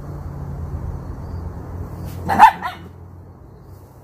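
A dog barks once, sharply, a little past halfway, with a shorter, weaker yelp right after.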